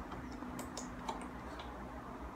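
A few faint, irregular light clicks over a steady low hum.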